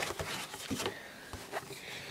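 Handling sounds: a few light knocks and rustles as a cardboard toy box is picked up and turned over.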